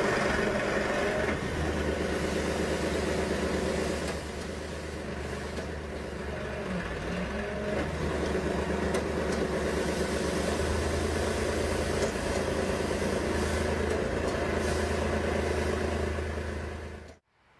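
Diesel engine of a concrete pump truck running steadily at a concrete pour, a continuous low drone with no break.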